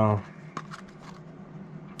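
Clear plastic clamshell pack of stinger hooks handled and turned in the hand, giving faint, scattered light crackles and clicks of thin plastic.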